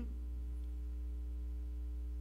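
Steady low electrical mains hum, with a few faint steady higher tones above it.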